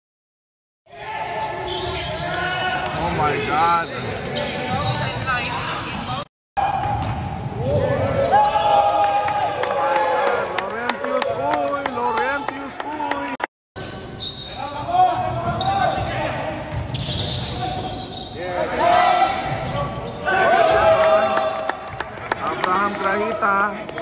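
Indoor basketball scrimmage in an echoing gym: the ball bouncing on the hardwood court and players' voices calling out. The sound starts about a second in and breaks off abruptly twice for a moment.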